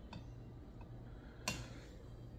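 A plastic dish soap bottle being handled over a kitchen sink: a faint click just after the start, then one sharper click about one and a half seconds in as the bottle is put back down.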